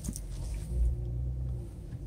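Low, steady rumble of a 2017 Lexus GS 350 F Sport's 3.5-litre V6 idling, heard from inside the cabin.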